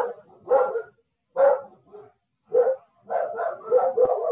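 A dog barking repeatedly over a video call, a run of short separate barks with several in quick succession near the end.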